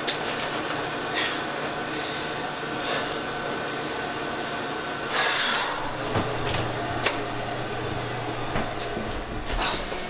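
Paper banknotes rustling in the hands, then a longer rustle of movement about five seconds in and a sharp click about seven seconds in, over a steady hum.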